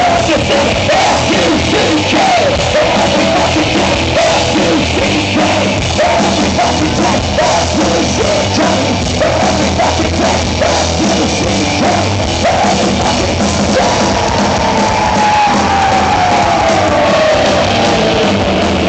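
Horror-punk rock band playing live and loud: distorted electric guitars, bass and drums, with a singer's vocals over them. Near the end a long note falls slowly in pitch.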